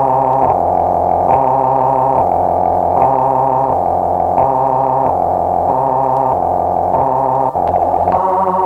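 Electronic music from a DJ mix: a distorted synthesizer line of sustained chords, its bass alternating between two notes a little under once a second.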